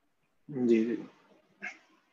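Speech only: a man's short spoken acknowledgment, "ji, ji", about half a second in, with a brief second syllable just after; otherwise silence.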